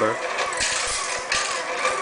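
Screw counting machine running, feeding and counting out small screws with a steady hissing rattle. The rattle swells briefly twice.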